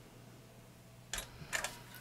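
Footswitch clicks on a Voodoo Lab Commander MIDI controller, pressed to store a preset: one click a little over a second in, then two quicker ones just after, over a low steady hum.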